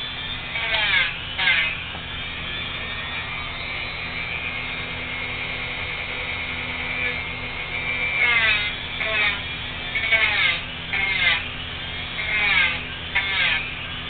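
Corded multi-speed Dremel rotary tool with a pet nail-grinding head, running with a steady whine while it files a Vizsla's toenails. Its pitch swoops and wavers again and again as it is pressed onto the nails, once in the first two seconds and then repeatedly from about eight seconds in.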